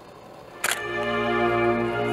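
Symphony orchestra with piano soloist playing classical music: a soft passage fades, then about two-thirds of a second in a sudden loud chord is struck and held.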